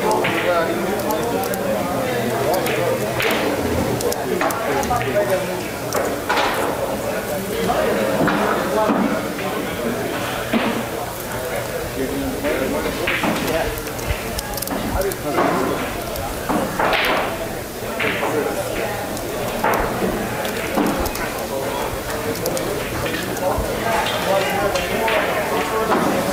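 Indistinct voices talking in the background.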